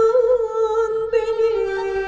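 A woman singing a Turkish folk song (türkü), holding one long note that wavers slightly and steps down about one and a half seconds in.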